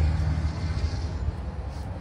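Steady low rumble of a vehicle engine running.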